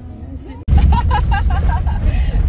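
Car cabin road noise: a loud, steady low rumble of a car driving, cutting in abruptly under a second in, with a person's voice over it.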